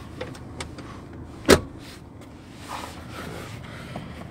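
A few faint clicks and one sharp knock about one and a half seconds in, with soft rustling near the end: handling and movement inside a car cabin.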